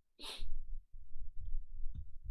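A short, sharp breath from the man at the microphone, heard once about a quarter second in, then a low rumble of background noise and a faint click near the end.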